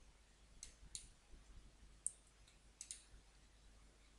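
A few faint computer mouse clicks, some in quick pairs, spread through near silence.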